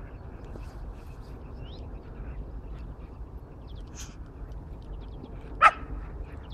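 A single short, loud dog bark near the end, over a steady low rumble.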